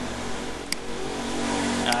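Steady background noise with a faint low hum, broken by one sharp click about three-quarters of a second in; a spoken word begins just at the end.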